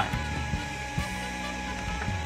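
Steady hum with several faint steady tones, and a light click about a second in.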